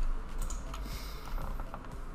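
Faint scattered clicks of a computer keyboard and mouse being worked, over a low steady hum.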